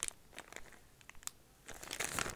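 Faint crinkling of a clear plastic zip bag being handled, a few soft crackles that grow louder near the end.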